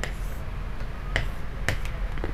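A few short, sharp taps of a pen on an interactive display screen, about three in two seconds, over a low steady room hum.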